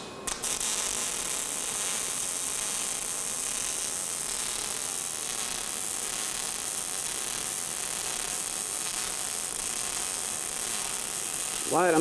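MIG welding arc struck with a few quick pops just at the start, then running steadily as a fill pass is laid in a horizontal V-groove joint in steel plate.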